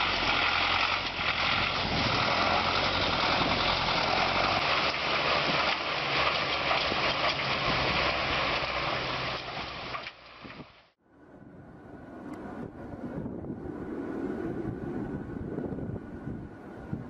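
Soviet-style ZIL off-road truck's engine running under load as it drives through deep mud and water, under a loud, dense rushing noise. About eleven seconds in the sound cuts off abruptly and gives way to a quieter truck engine.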